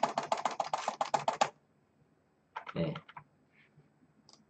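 Computer keyboard typed in a rapid run of about a dozen keystrokes over the first second and a half, clearing the text in an open Notepad window.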